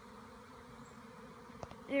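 A swarm of honeybees in flight, buzzing as a steady hum, with one faint click about a second and a half in.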